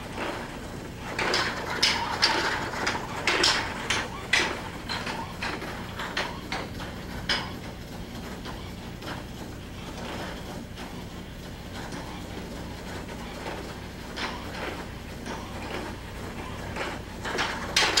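Spring Flamingo bipedal walking robot striding at speed: its feet tap and knock on the concrete floor and its joint actuators clatter, in a run of sharp clicks about two a second, loudest near the start and again near the end. A steady low hum lies underneath.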